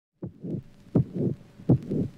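A heartbeat sound effect: three low double thumps, a sharper beat followed by a softer one, about one pair every three quarters of a second.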